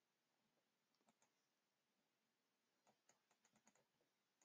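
Near silence, with a few very faint computer mouse clicks scattered through.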